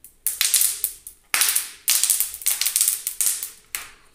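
Clear plastic protective sheet being peeled off a laptop screen and handled, crackling in a quick run of sharp bursts, loudest from about a second and a half in.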